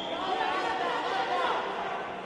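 Indistinct, overlapping voices calling out and chattering.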